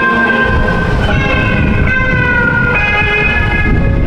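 Electric guitar played through a busker's amplifier, long sustained notes changing pitch about once a second, over low traffic rumble.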